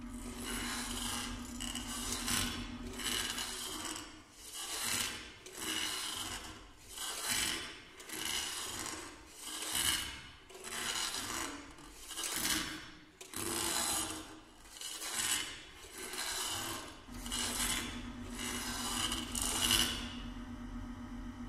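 Baritone saxophone and live electronics making a rhythmic series of rasping noise swells, about one a second, with no clear pitch. A steady low hum stops at the start and comes back near the end.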